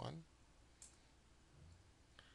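Near silence with a single faint, short click a little under a second in: a computer keyboard key, the Return key entering a typed command.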